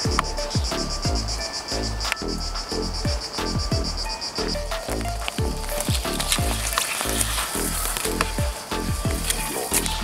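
Background electronic music with a steady beat of deep kick drums that drop in pitch, a sustained bass and a simple synth melody. A fast, even high shimmer runs through the first half and gives way to a brighter hiss partway through.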